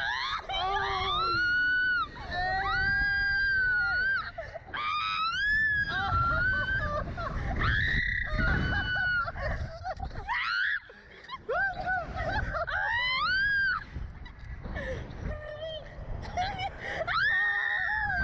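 Two riders screaming on a SlingShot catapult ride, about six long high screams one after another, with wind rumbling on the microphone underneath.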